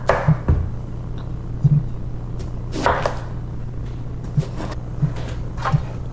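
Kitchen knife cutting through a bottle gourd and knocking on a plastic cutting board: several separate short cuts and knocks about a second apart, the loudest about three seconds in, over a steady low hum.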